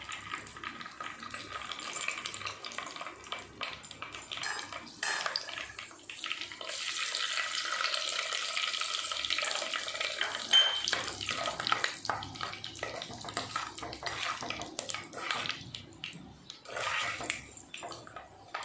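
Ingredients sizzling and frying in hot oil in a clay pot, the sizzle growing louder for a few seconds about a third of the way in. In the second half a steel slotted ladle stirs through the oil, with frequent light clicks and scrapes against the pot.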